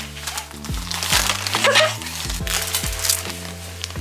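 Background music with a steady beat and bass line, over faint crinkling of a plastic poly mailer being handled.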